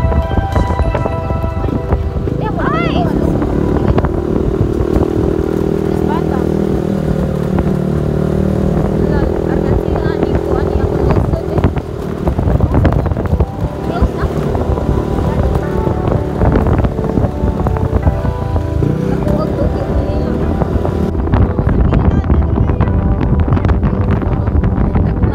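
Motor scooter running on the move, with heavy wind buffeting on the microphone.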